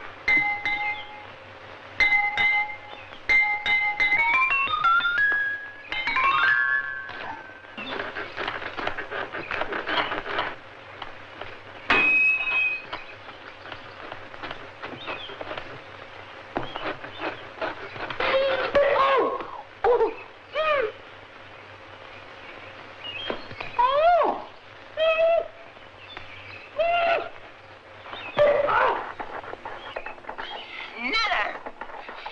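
Old slapstick comedy film soundtrack with no dialogue. Near the start, short music cues play repeated notes and then a rising run of notes. Scattered knocks follow, and later several short cries that slide in pitch.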